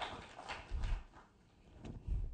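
Scattered audience laughter fading out, with two low thumps: one just under a second in and one near the end.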